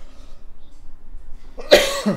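A man coughs once, sharply, near the end, after a quiet pause.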